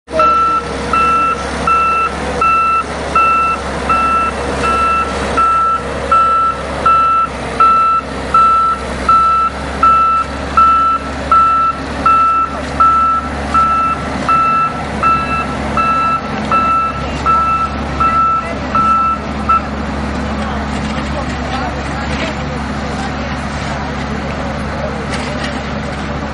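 PistenBully snow groomer's reverse alarm beeping steadily, about three beeps every two seconds, over its diesel engine running. The beeping stops a little after three-quarters of the way through, and the engine keeps running.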